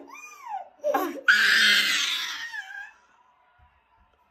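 A toddler crying: short rising-and-falling whimpering cries, then a long loud scream-like wail about a second in that dies away near the three-second mark.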